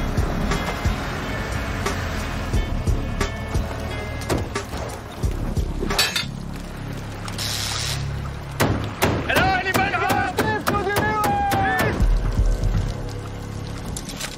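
A film soundtrack mix: a music score over heavy rain, with a run of sharp knocks and clicks. In the second half a wavering pitched sound comes in for a few seconds.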